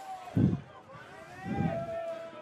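Distant voices shouting on the field, with low gusts of wind buffeting the microphone about half a second in and again near the end.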